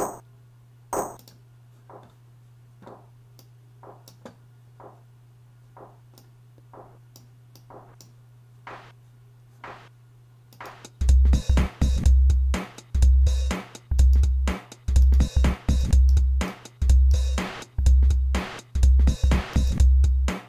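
Logic Pro X Ultrabeat drum synth playing a step-sequenced pattern. For the first ten seconds or so, faint short hits repeat evenly over a low steady hum. About eleven seconds in, a loud drum loop with heavy, distorted kick hits comes in, along with a synthesized clap thickened with a noise layer and bit-crushed 'dirt'.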